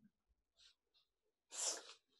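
A short, sharp burst of breath from a person about one and a half seconds in, loud against an otherwise quiet room, with a few faint ticks before it.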